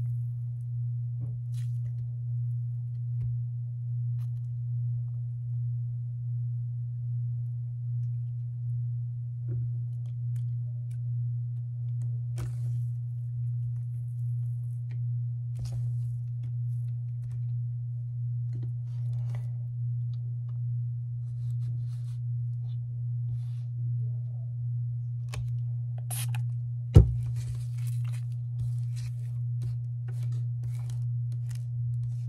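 A steady low hum with a slow, even pulse throughout, over faint crackles and squishes of hands kneading red play sand mixed with soap and shampoo. A single sharp click comes a few seconds before the end.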